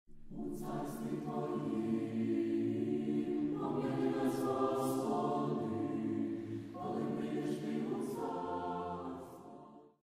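A choir singing a slow chant in long held chords that change a few times, fading out near the end.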